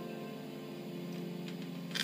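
Piano's closing chord ringing out after a short rising run of notes, with a couple of faint clicks near the end.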